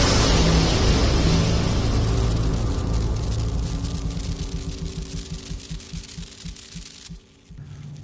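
Produced logo-intro sound effect: a boom followed by a long, dense rumble that slowly fades with a flickering crackle and a low pulsing hum, cutting off about seven seconds in.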